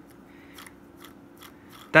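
Faint, irregular light clicks from the small belt pulley of a Farmall H Precision Series toy tractor being turned by finger.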